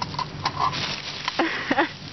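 Leaves and twigs of a bush rustling and crackling as an arm pushes through them, with irregular clicks. Near the end a person makes a few short, high-pitched squeaky vocal sounds.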